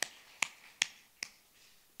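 A single person's hand claps, four sharp claps about 0.4 s apart, each fainter than the last, dying away about halfway through.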